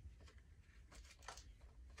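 Near silence, with a few faint clicks and rustles of small plastic accessory pieces and their plastic bag being handled.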